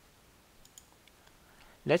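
A few faint, light clicks, spread over about a second, against quiet room tone; a man's voice starts right at the end.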